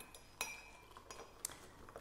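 Two light clinks of tableware while instant miso soup is being made up: a sharp one about half a second in with a brief ring, and a fainter one near the middle.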